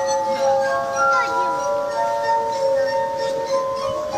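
Glass harp: rows of tuned drinking glasses played by rubbing wet fingertips around their rims, giving pure, sustained ringing notes that overlap and ring into one another as a slow melody.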